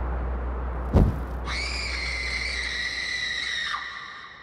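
Film soundtrack: a low drone, a sudden hit about a second in, then a long, high, shrill tone that sinks slightly and drops away in pitch near the end.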